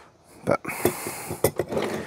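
Rustling of a leafy Japanese maple cutting handled in the hands, with a few small clicks.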